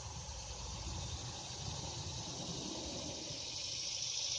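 Steady high-pitched drone of summer insects, with a low rumble underneath.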